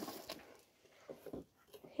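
Faint handling of a flat corrugated cardboard box as its flap is pried open: a few soft scrapes and rustles near the start and again a little after a second in, with near quiet between.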